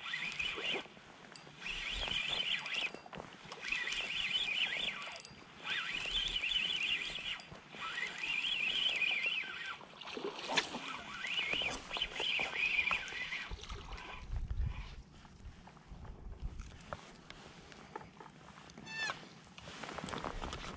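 Spinning reel (Shimano Nasci 4000) cranked in short spurts while a hooked schoolie striped bass is played in, its gear whine wavering up and down with each turn of the handle, with a few sharp clicks and knocks between spurts.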